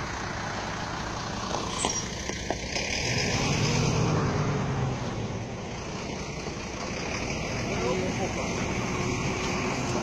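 Heavy truck's diesel engine running, rising in level between about three and five seconds in, with voices in the background.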